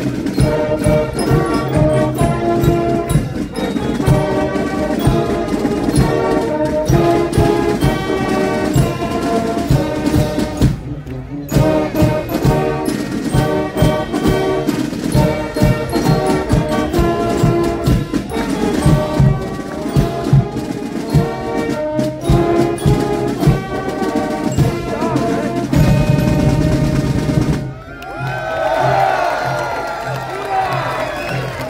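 A brass marching band playing a tune to a steady drumbeat. The music stops about two seconds before the end, and the crowd breaks into cheering and applause.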